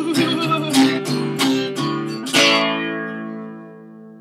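Acoustic guitar strummed in a few short strokes, then a final chord about two seconds in that is left to ring and fade away, closing the song.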